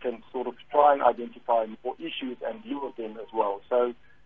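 A man talking continuously over a telephone line, the voice thin and narrow.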